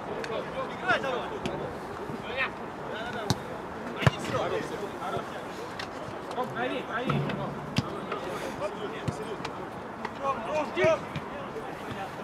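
Football kicked a few times on an artificial-turf pitch, sharp thuds with the loudest about four seconds in, amid scattered shouts from players calling across the pitch.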